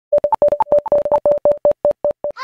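Synthesized intro sound effect: a rapid run of short electronic beeps, mostly on one pitch with a few higher beeps mixed in, slowing toward the end.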